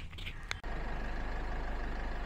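A vehicle running: a steady low hum with even road noise, and a short click about half a second in.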